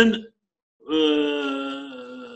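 A man's voice holding one long vowel at a steady pitch, like a drawn-out hesitation 'euh', starting just under a second in and slowly fading.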